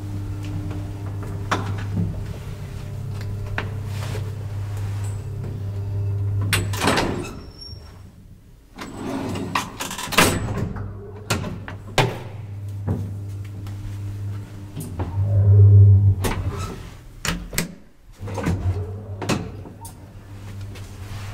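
Old ASEA Graham traction elevator travelling with a steady low hum, which stops about seven seconds in. Then the car's metal gate and doors give a series of clanks and a loud thud, and the hum starts again near the end.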